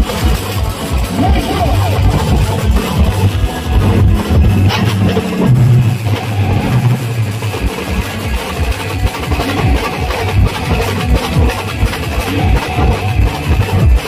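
An Adivasi timli brass-and-drum style band playing live: bass drums and side drums beating a fast, steady rhythm of about three strokes a second, with an amplified melody line over the drums.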